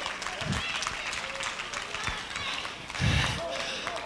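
Church congregation clapping their hands, a steady spatter of claps with a few voices calling out faintly, and a short louder voice sound about three seconds in.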